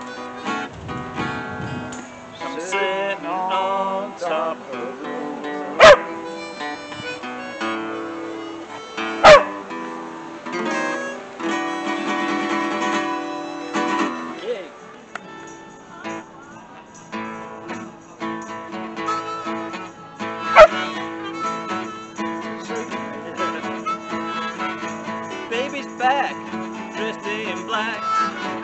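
Acoustic guitars and a harmonica playing a blues instrumental break, with a dog barking loudly three times, about six, nine and twenty-one seconds in.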